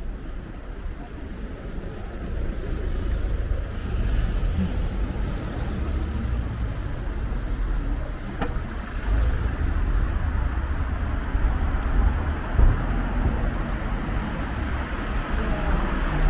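Road traffic on a city street: cars passing close by one after another, a steady rumble of tyres and engines that swells as each goes past.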